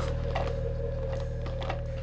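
A steady low hum, with a few light clicks as a plastic dinosaur action figure is bent and moved by hand.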